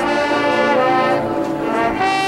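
Marching band brass section playing sustained chords, moving to new notes a few times.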